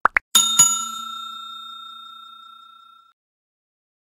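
Two quick clicks, then a bell struck twice and left ringing, fading away about three seconds in: the click-and-ding sound effect of an animated subscribe button and notification bell.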